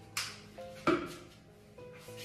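Background music with steady tones, over which come two sharp knocks, the louder one about a second in: a red plastic scoop and bucket being handled.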